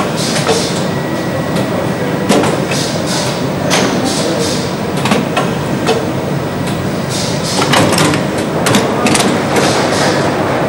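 Shoe-lasting machine working on a leather boot over a steady factory din, with sharp knocks and short hisses at irregular intervals.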